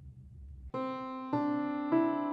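Piano playing a whole-tone scale slowly upward, one sustained note a little over half a second after the last: three rising steps, starting about a third of the way in.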